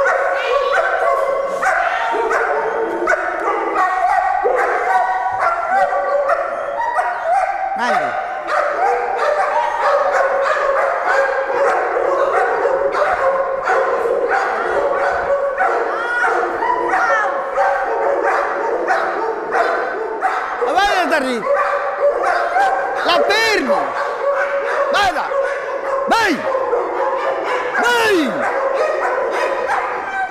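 Many dogs barking and yelping over one another without a break, with whining cries that glide up and down in pitch.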